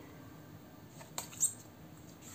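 Oracle cards being handled on a cloth-covered table: two short flicks, a quarter second apart, a little past a second in, as a card is put down and the next one handled.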